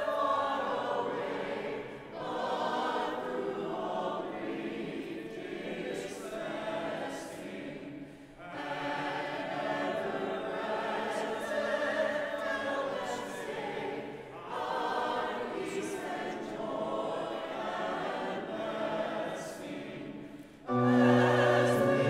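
Church choir singing a hymn with accompaniment, phrase by phrase with short breaks between lines. Near the end the music swells sharply louder, with strong low notes.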